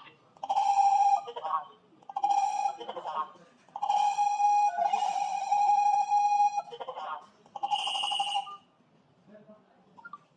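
A smartphone on speakerphone in a call to a GSM alarm panel: steady electronic beep tones, one long one in the middle, alternate with short bits of the panel's voice prompts as keypad digits are pressed to control it remotely. It goes quiet near the end.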